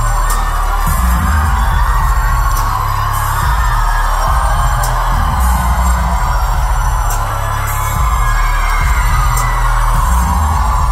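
Indie rock band playing live with no vocals yet: steady drums and bass under a held, ringing guitar chord, with cymbal crashes every couple of seconds.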